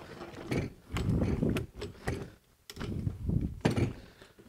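Antique Millers Falls breast drill cranked by hand: its gears click and rattle in uneven bursts as the bit bores through a wooden block.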